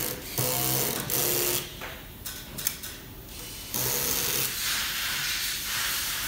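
Bursts of mechanical whirring, each a second or so long, with a few sharp clicks between them.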